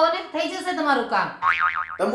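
A woman's speech, then a cartoon 'boing' comedy sound effect: a tone sliding down in pitch, then wobbling rapidly up and down for about half a second near the end.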